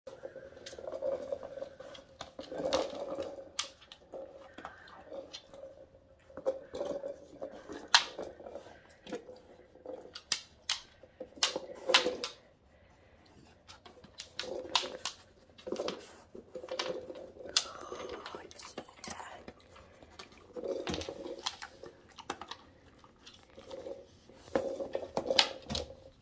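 Rubber treat toy being nosed and rolled across a hardwood floor by a dog, with repeated sharp knocks and clicks as it tips and bumps along.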